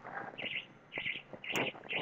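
A small bird chirping faintly: three short high chirps about half a second apart.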